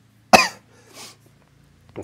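A man's single short cough about a third of a second in, followed by a faint breath about a second in.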